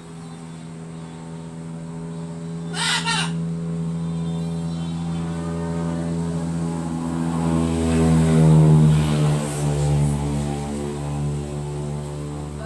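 A propeller aircraft passes overhead: a steady low drone builds, peaks about eight to nine seconds in while dropping in pitch, then eases off. A short sharp call cuts in about three seconds in.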